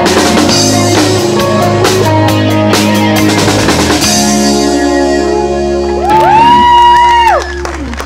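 Live rock band with electric guitars, bass and drum kit playing the closing bars of a song. The drums hit steadily for the first half, then the band holds a chord, and a long held note, the loudest moment, rings out about three quarters in before the music drops away near the end.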